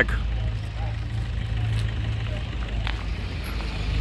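A steady low engine drone runs throughout, with faint voices in the background and a brief click near the end.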